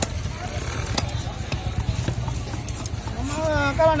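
Heavy knife chopping fish on a wooden stump chopping block: two sharp strikes about a second apart at the start, then lighter knocks, over a steady low rumble. A man's voice comes in near the end.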